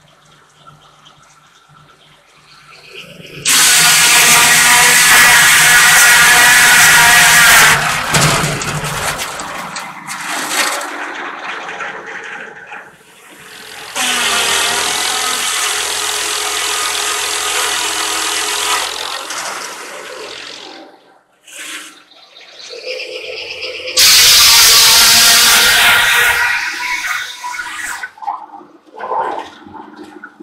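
Homemade circular sawmill with a 52-inch, 32-tooth blade ripping a pine log: three loud cuts, each a rush of noise with a high ringing whine, the first about four seconds long a few seconds in, the second about five seconds long in the middle, the third shorter near the end. The blade runs much more quietly between cuts.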